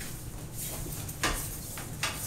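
Low room noise with two brief soft knocks or rustles, about two-thirds of a second in and again a little past one second.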